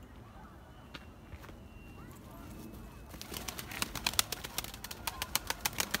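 Domestic flying pigeons' wings flapping close by as they take off and fly past, a rapid clatter of wingbeats that starts about halfway through and grows louder.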